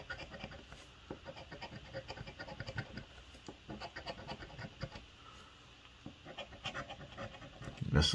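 A metal coin scraping the coating off a lottery scratch-off ticket in quick, irregular strokes, with a short lull about five seconds in.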